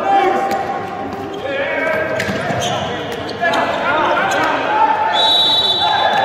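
A handball bouncing and players' feet on the wooden court, with knocks ringing in a large, near-empty hall. Near the end a referee's whistle blows briefly as a player goes down.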